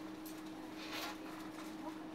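Passenger train coach interior at a station: a steady electrical hum, with a few faint clicks and a brief hiss about a second in.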